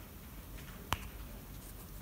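Quiet room tone with a single short, sharp click a little under halfway through.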